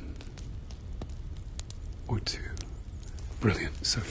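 A man's soft, murmured voice, twice, over a steady low hum, with faint scattered clicks from handling the lens held up to the camera.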